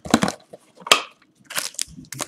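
Cardboard trading-card box being handled and opened: three short scraping, rustling noises from the box's lid and flaps.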